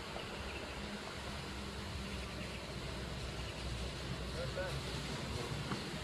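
Steady outdoor background noise, with a faint distant voice about four and a half seconds in.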